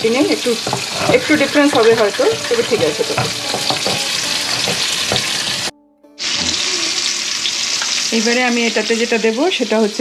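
Mushrooms and green beans frying in a hot pan, a steady sizzle with the scrape of a spatula stirring them. The sound drops out for a moment about six seconds in, then the sizzle carries on.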